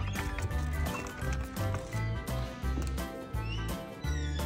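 Background music with a repeating bass line.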